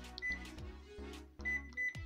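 Ton S920 card-payment terminal giving short, high key-press beeps: one beep just after the start, then three quick beeps near the end. Faint background music runs underneath.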